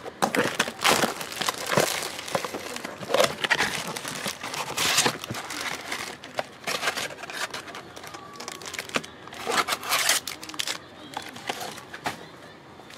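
Plastic shrink-wrap being torn and crinkled off a 2023 Bowman Mega Box of baseball cards, then the sealed plastic card packs rustling as they are handled. The noise comes in a run of sharp crackles with many loud peaks.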